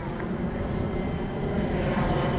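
Wind buffeting the microphone outdoors: a steady low rumble that grows a little louder near the end.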